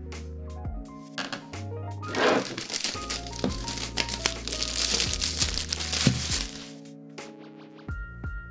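Plastic shrink wrap crinkling as it is cut and peeled off a laptop box. The crinkling comes in dense from about two seconds in and dies away near the end, over background music.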